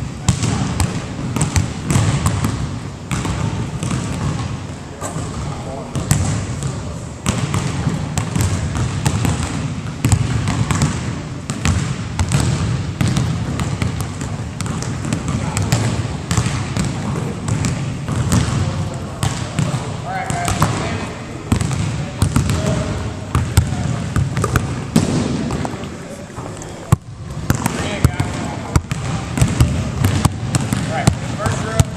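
Basketballs being dribbled and bounced on a hardwood gym floor: irregular sharp slaps, one after another, with indistinct voices under them.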